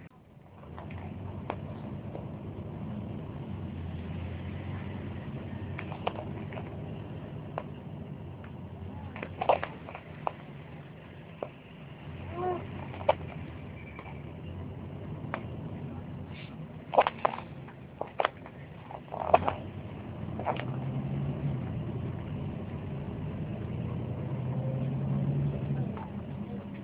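Low, steady rumble of town road traffic, with scattered sharp clicks and knocks over it.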